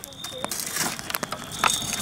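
Wood fire crackling in a grill, with scattered sharp pops and snaps from the burning logs.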